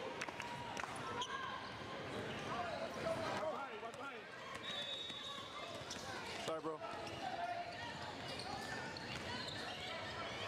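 Basketballs bouncing on a hardwood gym floor amid indistinct chatter of many voices.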